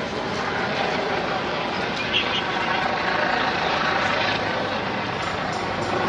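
Helicopter running overhead: a steady drone mixed with general street noise.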